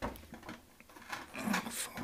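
Rock specimens knocking and scraping against each other and a tabletop as they are handled: a sharp knock at the start, then a longer gritty scrape over the second half.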